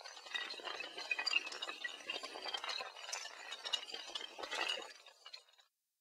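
Sound effect of many small tiles toppling, a rapid, dense cascade of clicks and clinks that stops about five and a half seconds in.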